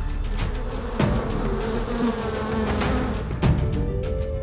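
Honeybees buzzing, with music playing underneath.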